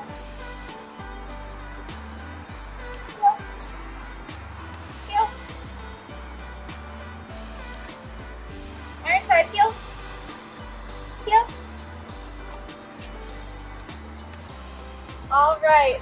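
Background music with a steady bass line, and a short call from a voice a few times.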